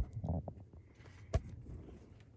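A quiet pause with faint handling noise: a click at the start, a brief low rustle, then one sharp click about a second and a half in.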